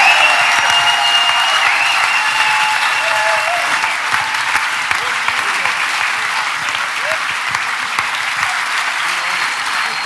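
Theatre audience applauding steadily, easing off slightly. A few held high tones ring under the clapping in the first few seconds and fade out.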